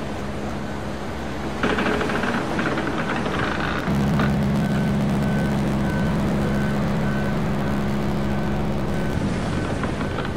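Motorcycle engine running at road speed under steady wind and rain noise. The engine note grows stronger about four seconds in. From then on a short high beep repeats about every two-thirds of a second.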